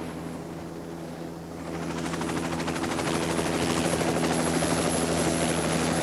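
Small helicopter running on the ground: a steady engine drone with rapid rotor-blade chopping, growing louder about two seconds in.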